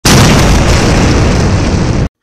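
A loud, harsh rush of noise used as an intro sound effect on a title card. It starts abruptly, holds steady, heaviest in the low end, and cuts off suddenly after about two seconds.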